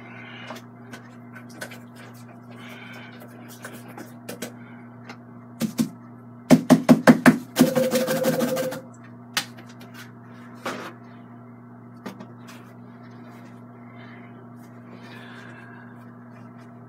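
Paintbrush knocking against the easel and canvas: a quick run of about six sharp knocks, followed by about a second of scraping, over a steady low hum. A few lighter clicks are scattered through the rest.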